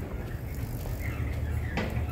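Steady low rumble of street background noise, with one brief knock near the end.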